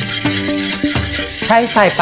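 A wire whisk stirring a thin liquid in a stainless steel saucepan, under background music of held notes that step from one pitch to the next.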